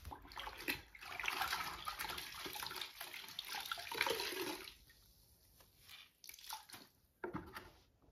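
Water splashing from a cleaning cloth being wrung out over a plastic bucket, running for about three and a half seconds before stopping. A few light knocks follow near the end.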